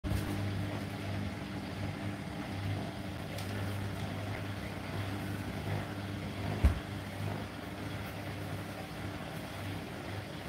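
Hotpoint NSWR843C front-loading washing machine running a wash cycle: a steady motor hum as the drum turns the laundry, with one dull thump about two-thirds of the way through.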